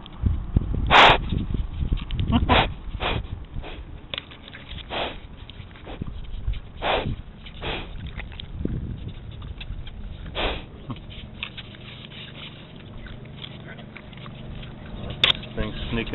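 A pig snorting and sniffing right against the microphone: a series of short, sharp, breathy snorts a second or two apart, the loudest about a second in.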